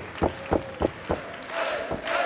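A rapid series of blows landing on a wrestler, about three a second, five in a row, stops a little past the middle. Crowd shouting rises near the end.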